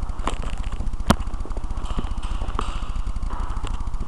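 Handling noise from a small helmet camera being held and adjusted by hand: a steady low rumble on the microphone with scattered small clicks and scrapes, and one sharp click about a second in.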